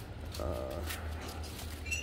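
A man's hesitant "um, uh" over a steady low rumble, with a brief high tone just before the end.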